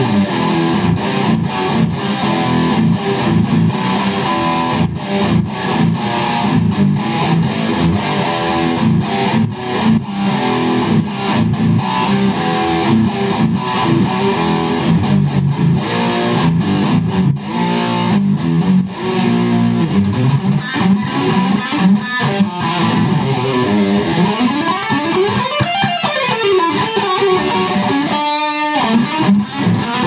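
Fender Stratocaster Plus Deluxe electric guitar played loud with distortion, running continuous lead lines and scales. Near the end come sweeping pitch glides up and down, then a brief break before the playing resumes.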